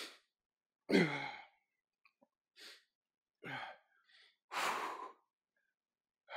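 A man breathing hard with the effort of one-arm dumbbell rows: a short voiced sigh about a second in, a couple of faint breaths, then a louder, longer exhale near the end.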